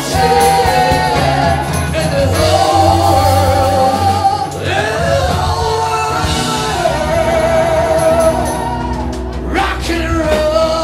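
A live rock band plays with a lead singer and backing singers holding long sung lines over drums, bass, electric guitar and keyboards.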